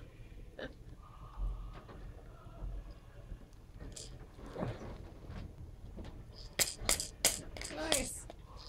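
Plastic stacking-toy rings, including a bead-filled rattle ring, clacking and rattling in a quick run of sharp clicks in the last second and a half. A voice sounds briefly midway.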